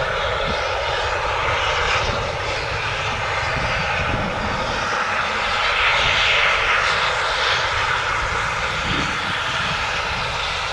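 C17 steam locomotive and DH45 diesel-hydraulic locomotive hauling a passenger train at a distance: a steady engine drone that swells a little about six seconds in.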